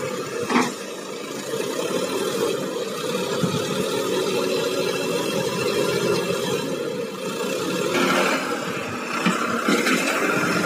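Sonalika diesel tractor engine running steadily with its hydraulic tipping trailer raised to dump soil. A sharp knock comes about half a second in, and a few short clatters near the end.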